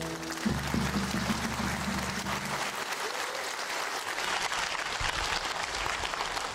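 An audience applauding. Under the clapping, the ensemble's final held note dies away in the first two and a half seconds.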